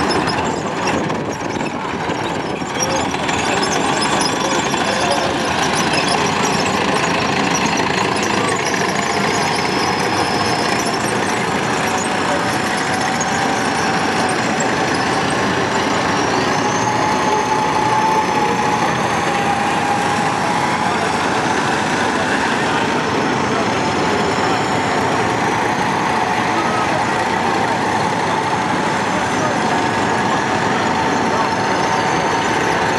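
Engines of tracked military vehicles, self-propelled guns, running steadily as they move slowly past in a column, with a faint drawn-out whine above the engine noise.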